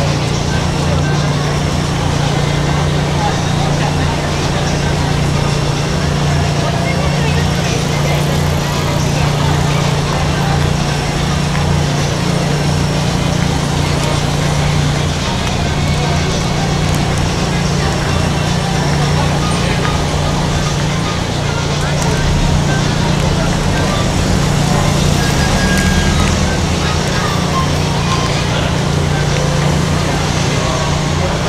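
Busy city-street ambience: the chatter of a passing crowd mixed with traffic noise, over a steady low hum.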